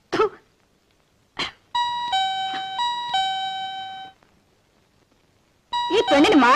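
Electronic two-tone doorbell chime: a falling 'ding-dong' sounded twice over about two seconds.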